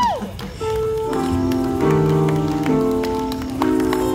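Live band music: a singer's voice glides up and then down at the very start, then held chords that change about once a second, with light percussion clicks underneath.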